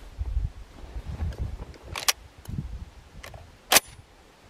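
Two sharp metallic clicks, a lighter one about halfway and a louder one near the end, from a Pointer Phenoma 20-gauge semi-automatic shotgun's action being worked to clear a spent shell that failed to eject. A low rumble on the microphone runs underneath.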